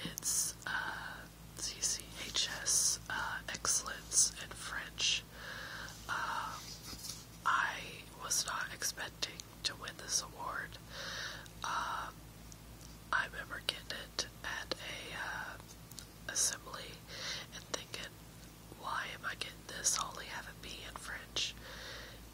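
A woman whispering continuously, breathy speech with no voiced tone, over a faint steady low hum.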